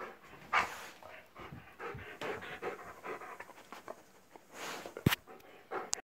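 A labradoodle panting hard in uneven bursts while tearing at its dog bed, with one sharp knock about five seconds in.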